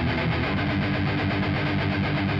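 Distorted electric guitar playing a punk rock part, overdriven through a modified TS9 pedal into a 100-watt Marshall JCM800 amplifier with a simulated speaker cabinet.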